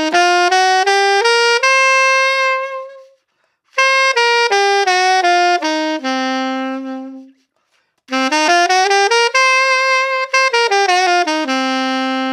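Alto saxophone playing the A blues scale (A, C, D, E-flat, E, G, A) in three phrases. It runs up to a held top A, then back down to a held low A, then up and straight back down again, ending on a long low A. Each note is clean and separate, with short silences between the phrases.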